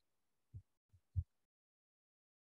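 Near silence broken by three short, low, dull thumps, about half a second, one second and just over a second in, the last the loudest.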